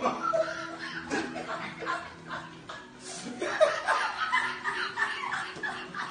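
A man laughing and chuckling in short bursts, getting louder a little over three seconds in.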